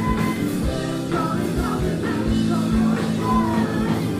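Live ska-punk band playing loudly, with electric guitars, bass and a horn section over a steady drum beat.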